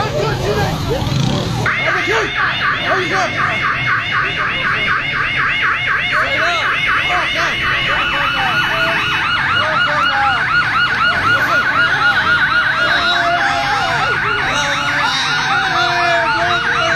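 A vehicle siren in a fast yelp that starts abruptly about two seconds in and keeps going, with a steadier second tone joining partway through, over voices.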